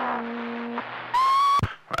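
Over a CB radio, a man's voice trails off, holding its last word on one low note. Then comes a short beep that rises and settles into a steady high tone, a roger beep marking the end of the transmission. A brief burst of noise follows as the signal drops.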